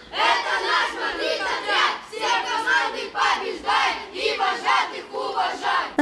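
A group of children's voices chanting together in short, rhythmic shouted phrases.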